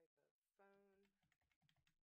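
Very faint typing on a computer keyboard, a quick run of keystrokes in the second half. About half a second in there is a short faint hum of voice.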